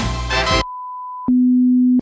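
Intro music stops about half a second in. A steady high sine tone follows, then a lower, louder steady tone for the last stretch, in the manner of a broadcast test-card tone.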